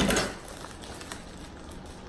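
Plastic wrapping and tissue paper rustling and crinkling as a purse is worked out of a tight box. It is loudest at the very start, then a faint, soft rustle.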